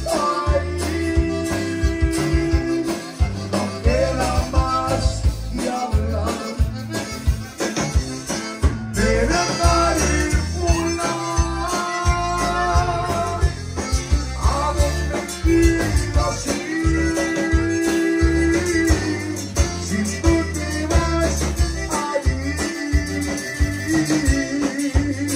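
A live Tejano conjunto band playing: button accordion carrying the melody over electric bass and guitar, with a singer at the microphone, to a steady dance beat.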